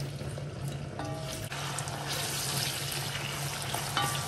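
Sliced onions sizzling in hot cooking oil in a pot as they are stirred with a wooden spoon; the sizzle grows a little stronger about halfway through.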